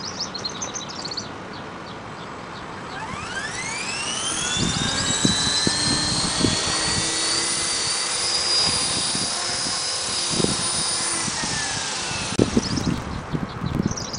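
Esky Belt CP electric RC helicopter spooling up about three seconds in with a steeply rising whine, then holding a steady high whine from its motor and rotor as it hovers, with low gusty buffeting on the microphone. The whine eases off near the end, and a few sharp knocks follow as it sets down.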